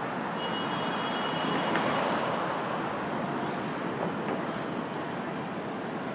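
Steady city traffic noise outdoors, a continuous rushing hum that swells slightly about two seconds in, with a faint high whine in the first couple of seconds.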